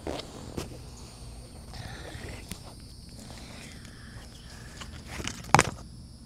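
Tiny plastic items and their wrapping being handled and peeled by hand: scattered light clicks and rustles, with one sharp click about five and a half seconds in, the loudest sound.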